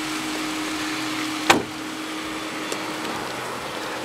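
A car door slammed shut once, about one and a half seconds in, over a steady hum.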